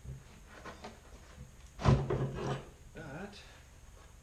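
A man's short strained voice about two seconds in, then a briefer one about a second later, as he pushes a heavy stone slab on steel-pipe rollers. Faint knocks and rubbing of the stone and rollers come between.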